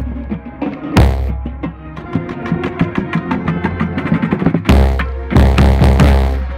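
Marching band percussion heard right at a marching bass drum. Heavy bass drum strokes land about a second in and several times near the end, over fast drumming and pitched band music.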